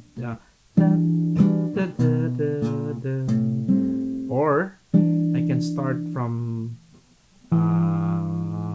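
Acoustic guitar playing chords with a running bass line, a walk of single bass notes that starts from the fifth of A minor. It comes in three short phrases with brief pauses between them. A short wavering vocal sound comes about four seconds in.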